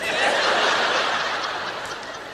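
A large audience laughing together. The laughter swells right away and then slowly dies down.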